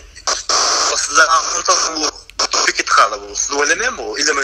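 Male speech over a phone line, with a stretch of hiss about half a second in.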